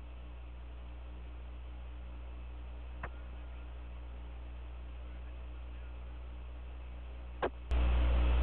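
Steady hiss and hum of the Apollo 11 air-to-ground radio channel between transmissions, with a faint click about three seconds in. Near the end there is another click, and the hiss jumps louder as the next transmission opens.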